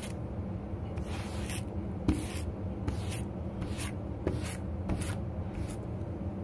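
Wire-bristled slicker-type brush raking through dyed faux fur in quick repeated strokes, about two a second, over a low steady hum. The fur is being brushed straight so the dyed pile won't clump and stick together.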